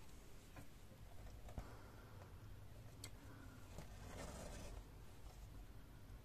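Faint, soft rustling of embroidery thread and fingers on aida cross-stitch fabric, in two short stretches, with a light tick or two.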